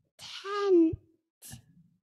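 A young child's voice into a microphone, drawing out one breathy word ('like') with a falling pitch, then a short breathy hiss.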